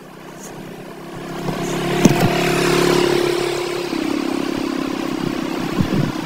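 Motorcycle engine running on the road, growing louder over the first three seconds, then dropping a step in pitch about four seconds in and running on steadily, with road and wind noise behind it.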